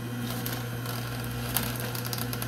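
Nama J2 slow masticating juicer running: a steady motor hum with irregular crackling and crunching as the auger crushes leafy greens.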